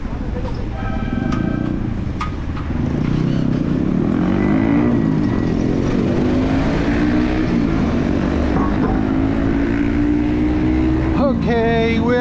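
Street traffic close by with heavy wind rumble on the microphone. A short horn toot sounds about a second in, and from about three seconds a nearby motor vehicle's engine revs up and down in pitch.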